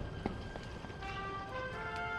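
Quiet film score with sustained held notes coming in about a second in, over a low rumble and a few running footsteps.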